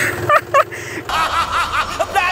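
A man laughing: two short snickers, then from about a second in a run of quick, rapid-fire laughter.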